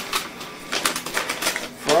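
A paper greeting-card envelope being torn open and handled by hand: a quick, uneven run of crackles and rustles of paper.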